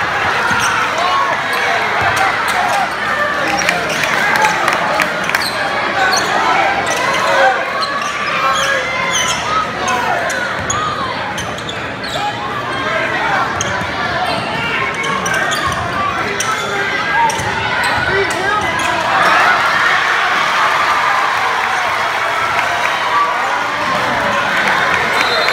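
Basketball crowd shouting and cheering, with a basketball being dribbled on a hardwood court. The crowd noise swells near the end.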